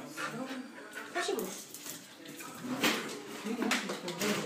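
Australian kelpie whining in wavering, gliding cries, with a couple of short sharp sounds near the end.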